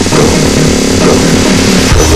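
Loud electronic dance music with a dense, buzzing synth sound filling the low and middle range.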